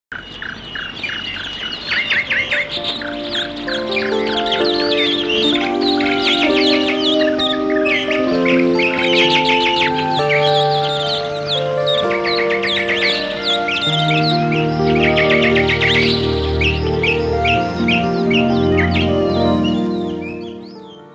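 Calm theme music of held chords with many songbirds calling over it; a deeper bass line comes in about two-thirds of the way through.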